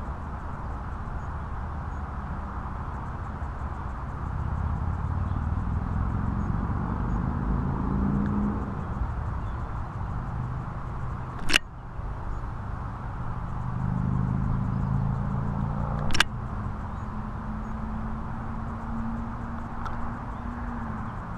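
A low engine drone that swells twice and eases off, with two sharp clicks partway through.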